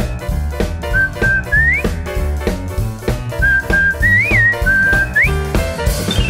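Cartoon theme music: a whistled melody in two short phrases, each ending in a quick upward slide, over a jazzy drum kit and bass beat.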